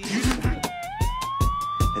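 A single high tone dips, then slides up about a second in and holds steady, over trailer music with a regular drum beat.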